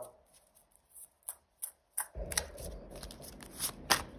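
Tarot cards being handled, with rustling and a run of crisp card snaps starting about halfway; before that only a few faint clicks.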